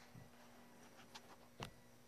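Near silence: room tone with a faint steady hum and a couple of faint ticks, the clearest one about a second and a half in.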